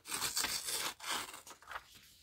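A sheet of paper being torn along the edge of a steel ruler: a drawn-out rip with a brief break about a second in.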